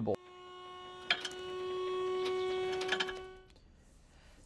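Dump trailer's electric hydraulic pump motor running with a steady whine as the bed starts to raise, swelling and then fading out, with a few light clicks.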